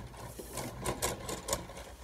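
LEGO Steamboat Willie model (set 21317) pushed along a table, its paddle wheels and moving smokestacks clattering as a quick, uneven run of small plastic clicks.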